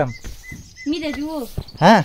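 A bird calling with three short, high, even notes in the first second. A pitched call that wavers up and down follows, and a louder short call that rises and falls in pitch comes near the end.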